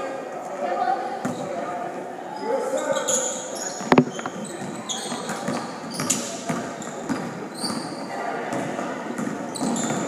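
A basketball being dribbled on a gym's hardwood floor, with sneakers squeaking and players' and spectators' voices echoing in a large hall. A single sharp loud knock comes about four seconds in.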